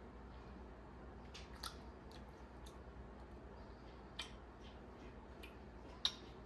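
Faint chewing: a child eating a bite of pizza, with a handful of small wet mouth clicks scattered irregularly over a low steady hum.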